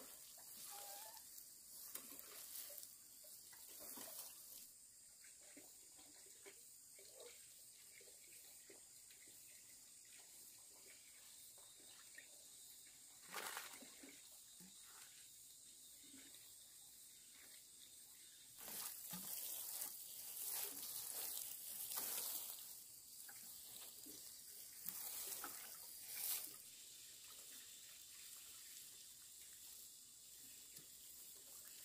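Faint hiss and patter of water sprinkling from a plastic watering can's rose onto soil and seedlings, louder for a few seconds past the middle.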